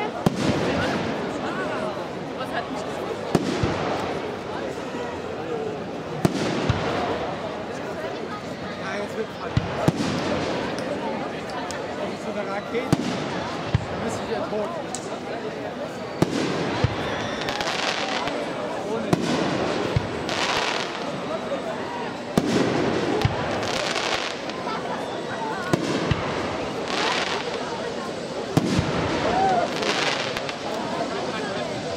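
Aerial firework shells bursting in sharp bangs every second or two, with stretches of hissing, over a steady background of onlookers' voices.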